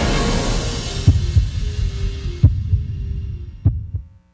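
Television station ident music fading out, with four deep low hits spread unevenly across the last three seconds before it cuts off.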